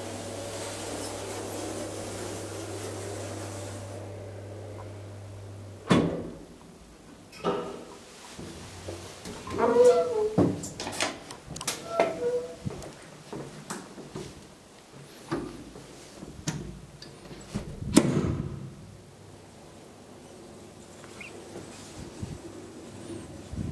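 Steady low hum of a 1980s KONE hydraulic elevator that cuts off with a sharp clunk about six seconds in. Then a series of clicks, knocks and door thuds with a few short squeaks as the swing landing door is worked.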